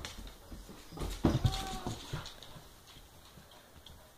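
Husky/Lab puppy and tabby cat scuffling on a tiled floor: paws and claws clattering and knocking, busiest about a second in, with a short pitched animal cry in the middle of it.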